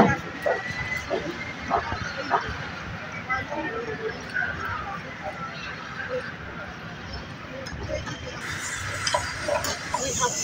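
Indistinct background voices and chatter over a steady outdoor noise floor, with scattered short knocks.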